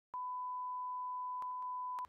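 A single steady electronic beep at one fixed pitch, like a test tone or censor bleep, held for nearly two seconds, with a few faint clicks about a second and a half in.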